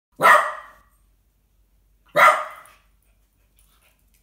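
A dog barks twice: two single barks about two seconds apart, each starting suddenly and dying away within about half a second.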